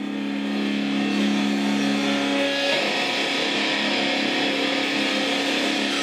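Distorted electric guitar holding a steady low chord, with no drums under it; its tone turns brighter about three seconds in.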